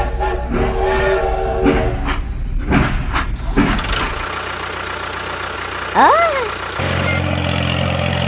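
Toy steam locomotive sound effects: a multi-tone whistle for about two seconds, then a few chuffing strokes. Near the end a steady low motor hum starts up.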